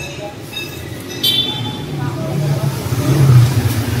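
Street traffic: a motor vehicle's low engine rumble that grows louder past the middle and is loudest near the end, with scattered voices.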